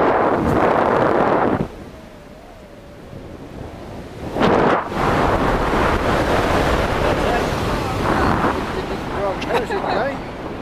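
Wind buffeting the microphone of a wrist-mounted camera during tandem parachute canopy flight. The rush drops off sharply under two seconds in and comes back loud about halfway through. A brief voice is heard near the end.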